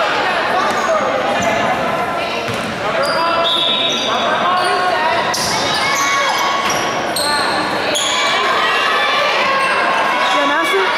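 Basketball shoes squeaking again and again on a hardwood gym floor during play, short high squeals in quick succession, over voices talking and calling out in the echoing gym.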